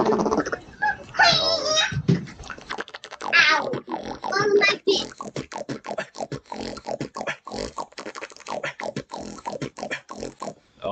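Human beatboxing: a few high, sliding vocal sounds in the first half, then a fast run of short, sharp percussive mouth hits through the second half.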